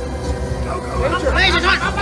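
A slot machine's bonus wheel spins with steady electronic tones. About a second in, several people start shouting excitedly over it as the wheel comes round to the Major jackpot.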